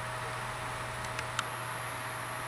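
Steady electrical hum with a faint high tone from the powered-up stepper motor drive, the motors energised but standing still. Two light clicks about a second in, after which a thin, very high whine sets in.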